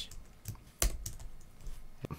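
Computer keyboard typing: a few separate keystrokes, one sharper than the rest a little under a second in, as a line of code is entered.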